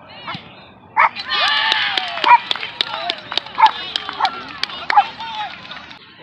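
Spectators yelling and cheering for a goal, with scattered hand claps, breaking out loudly about a second in and dying away near the end.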